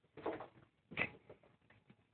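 Kittens scuffling as they play on a cat tree: two brief scratching, scrabbling noises, the second sharper and louder, about a second in.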